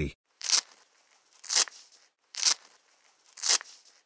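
Sound effect of a nappy being undone and taken off: four short bursts of noise about a second apart.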